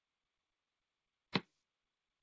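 Near silence with faint hiss, broken once, about a second and a half in, by a single short, sharp click.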